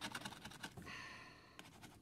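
Coin scratcher scraping the coating off a lottery scratch-off ticket in quick, faint strokes, stopping a little under a second in; a short breath follows.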